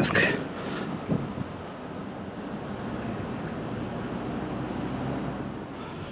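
A GMC's engine running steadily as it creeps slowly forward onto a car-hauler trailer, with wind on the microphone through the open driver's door.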